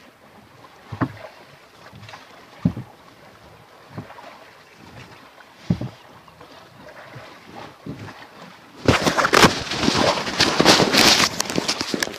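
Oars of a wooden rowboat knocking in their oarlocks about every second and a half with the rowing strokes. From about nine seconds in, a loud rough crackling on the microphone covers them.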